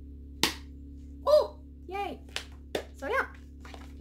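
Sticky catch toy in use: a few short, sharp smacks of the ball against the plastic catch paddle, with brief wordless voice sounds between them.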